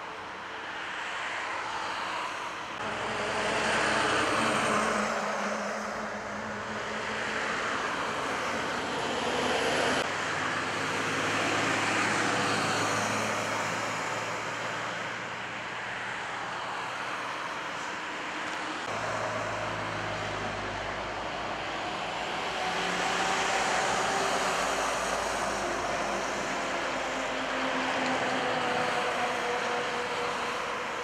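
Autobahn traffic passing at speed: cars and lorries going by one after another, the tyre and wind noise swelling as each passes and fading between, with the low hum of lorry engines.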